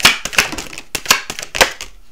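A deck of tarot cards being shuffled by hand, the cards slapping together in quick sharp strokes about three a second that stop just before the end.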